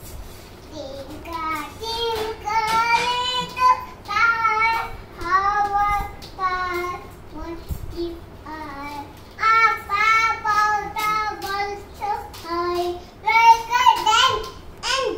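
A young child singing a song unaccompanied, in long held notes grouped in short phrases with brief breaks, starting about a second in.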